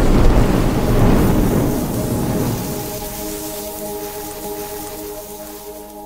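A deep, thunder-like rumble sound effect hits and fades away slowly. About three seconds in, a sustained chord of steady tones comes in under it and holds, quiet.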